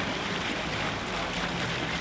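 Steady rushing outdoor background noise, with faint distant voices.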